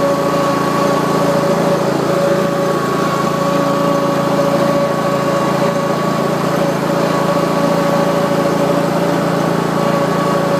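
Exmark Lazer Z zero-turn mower running steadily as it is driven along, its engine note carrying a steady high whine.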